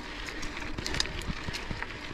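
Mountain bike rolling over a dirt road strewn with loose stones: a steady rush of tyre noise with frequent small clicks and rattles.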